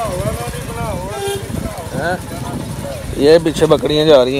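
Goats bleating, several long wavering calls in the first two seconds, over the steady running of a motorcycle engine.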